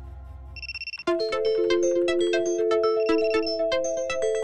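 Timer alarm going off: a short beep, then from about a second in a loud ringtone-style melody of bright, repeating chime notes. It signals the start of a timed writing sprint.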